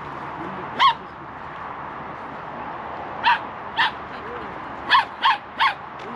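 Six short, sharp animal calls over a steady background hiss: one about a second in, a pair a little after three seconds, and three in quick succession about five seconds in.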